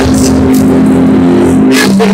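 Sustained keyboard chord held steadily, moving to a lower chord near the end.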